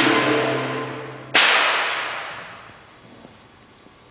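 Live band's held notes fading under a sharp crash, then a second, louder percussive crash about a second and a half in that rings away over a second or two.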